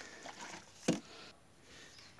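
Faint handling noises of a plastic oil bottle and hand tools, with one sharp click just under a second in.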